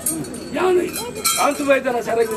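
A man's voice chanting in a drawn-out, sing-song line, overlaid by bright metallic clinking of small ritual bells or cymbals several times.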